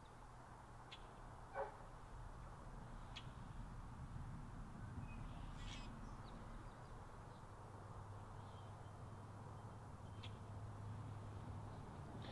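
Quiet outdoor background: a faint low rumble with a few brief, faint bird calls scattered through.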